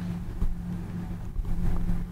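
Steady low electrical hum with a low rumble beneath it, and one faint tap about half a second in.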